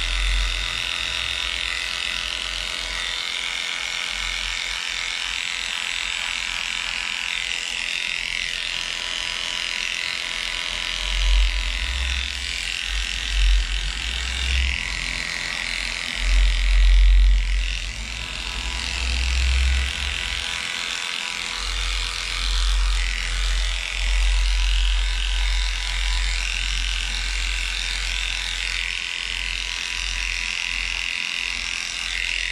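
Heiniger electric dog clipper running steadily while shaving matted coat from a dog's belly, giving a constant high buzzing hum. From about a third of the way in, uneven low rumbles come and go on top of it.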